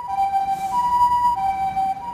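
Japanese ambulance's electronic two-tone siren, switching back and forth between a high and a lower tone about every two-thirds of a second.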